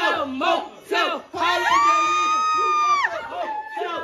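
A group of young people shouting and yelling together, with one long high-pitched scream held for about a second and a half in the middle.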